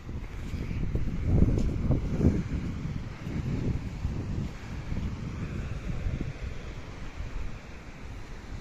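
Wind buffeting the microphone: an uneven low rumble that gusts hardest in the first couple of seconds, then settles into a steadier rumble.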